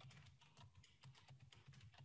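Faint computer keyboard typing: a quick run of light keystrokes.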